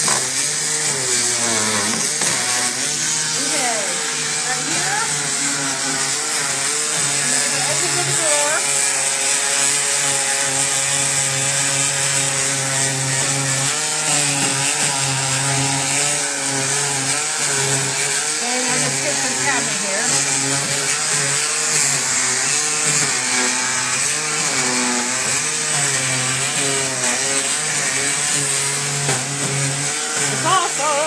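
Handheld electric sander running continuously against painted wood furniture, its motor pitch wavering slightly as it is pressed and moved along the edges and ridges, sanding through the fresh paint to distress it.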